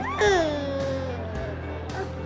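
A baby's long happy squeal as she is tickled: one call that rises briefly and then slides down in pitch.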